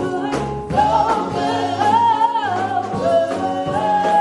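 Live gospel singing by a group of women vocalists on microphones, in harmony over amplified instrumental backing with held bass notes and light percussion.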